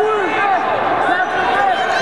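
Several people's voices calling out and talking over one another, with no words clear enough to make out.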